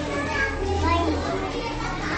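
Several children talking and calling out at once, their voices overlapping, over a low steady hum.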